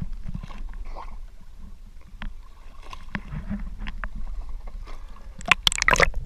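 Seawater sloshing and gurgling against an action camera's waterproof housing at the surface, over a steady low rumble with scattered small clicks. About five and a half seconds in, a loud burst of splashing and crackling bubbles as the camera goes under.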